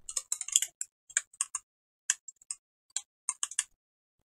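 Computer keyboard being typed on: a quick run of keystrokes at the start, then scattered single key clicks and short bursts of two or three.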